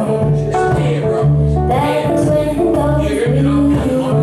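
Live acoustic band music: guitars strummed and plucked, among them an archtop hollow-body and an acoustic guitar, under a woman's singing voice, with a steady bass line that changes note about once a second.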